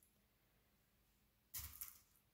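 Near silence: room tone, with one short soft noise about one and a half seconds in.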